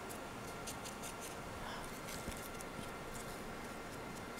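Faint light ticks and scratches of a paintbrush dabbing acrylic paint onto a plastic bottle figure, over a low steady hiss.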